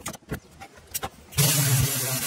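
A few light knocks, then about one and a half seconds in a pneumatic sander starts up and runs steadily with a low hum and a strong hiss of air.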